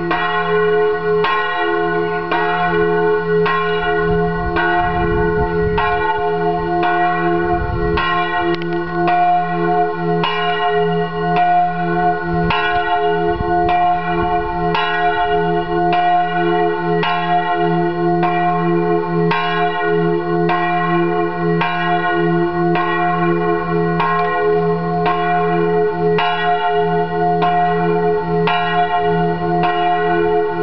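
A single church bell with strike note f', hung from a straight headstock, swinging and ringing at an even pace, its clapper striking about once a second while the deep hum carries on between strokes.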